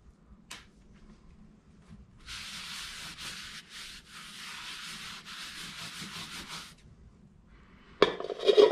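A cloth rag wiped rapidly back and forth over a wet steel welding table top, a scrubbing rub of quick strokes from about two seconds in until nearly seven seconds. A single light knock about half a second in.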